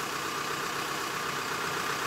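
LOVOL 1054 tractor's diesel engine idling steadily.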